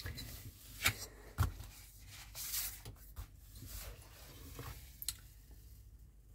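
Glossy paper magazines being handled and laid out on a table: soft paper rustling and sliding, with a couple of light taps about a second in.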